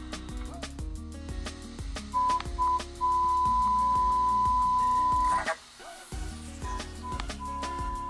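Audiometer test tone played through the booth's sound-field speaker for a hearing screening: two short beeps about two seconds in, then a steady mid-pitched tone held for about two and a half seconds, with the same pattern starting again near the end. Background music with a steady beat runs underneath.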